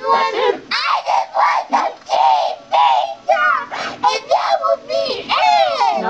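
A child wailing and crying in a tantrum, run through a 'G Major' effect that stacks several pitch-shifted copies of the voice into a high, layered chorus. The cries come in short repeated wails that rise and fall.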